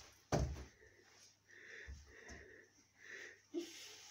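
A thump of feet landing on a wooden floor about a third of a second in, followed by a couple of softer footfalls and the rustle of padded winter coats.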